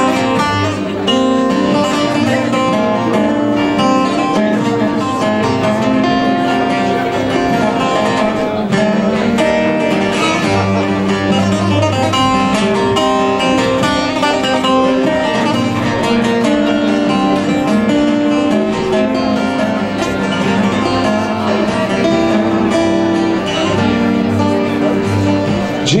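Instrumental introduction to a traditional Turkish song played on a bağlama (long-necked saz lute) and an acoustic guitar: a plucked saz melody over steady guitar accompaniment, without a pause.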